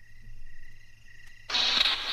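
Produced sound effects opening a radio-skit intro. A faint, steady, high chirring is heard first; about one and a half seconds in, a loud burst of hiss like radio static begins suddenly.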